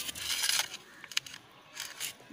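A brief rustle in the first half second or so, followed about a second later by a single sharp click.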